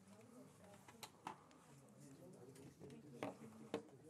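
Near silence in a small room: faint, distant murmuring voices with a few soft clicks and knocks, twice about a second in and twice near the end.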